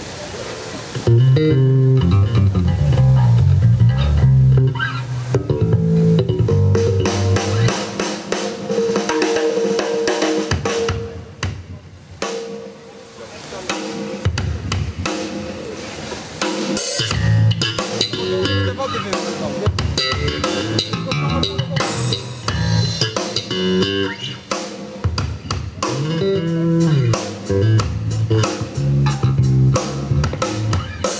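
Live blues band playing an instrumental groove on drum kit, electric bass and electric guitar, starting about a second in, with a short quieter stretch near the middle.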